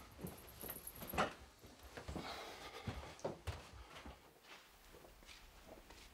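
A person getting up and moving about: rustling of clothes and bedding, then irregular footsteps, with one sharp knock about a second in.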